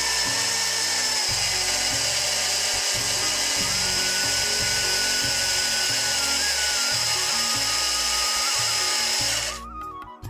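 Electric mixer grinder with a stainless steel jar running steadily at speed, then switched off near the end.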